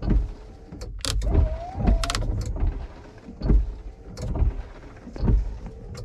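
Semi truck's windshield wipers running: a steady electric motor whine with a low thump roughly once a second as the blades sweep across the glass, and a few sharp clicks from the stalk switch. The wipers work even though the dash is showing a wiper relay malfunction code.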